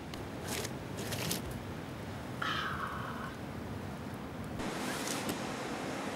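A pawpaw being scraped against coarse, crystal-studded granite: a few short, rough rasping strokes over steady outdoor background noise, with a brief high tone in the middle.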